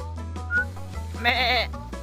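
A goat bleats once, a short wavering call about a second in, over background music.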